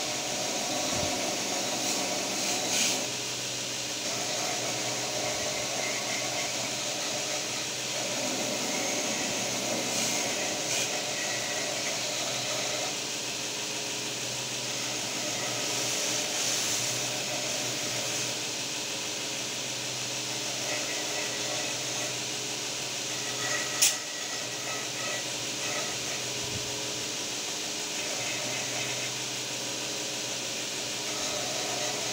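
Belt grinder running steadily while a knife handle is held against its abrasive belt and sanded, the grinding rising and falling slightly with each pass. One sharp click comes late on.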